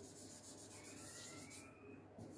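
Marker pen writing on a whiteboard: faint, quick rubbing strokes that stop about a second and a half in. A faint thin squeak rising slowly in pitch runs through the second half.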